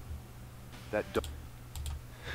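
A few faint, sharp clicks from a computer being operated, coming after a single short spoken word about a second in. The clicks go with playback being paused.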